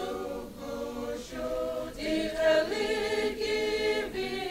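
A choir singing in several voices, holding notes that change every second or so.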